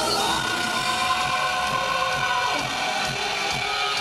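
Rock band playing live through a large hall's PA: electric guitars, bass and drums in an instrumental passage of the song, with a held high melodic line over the first couple of seconds.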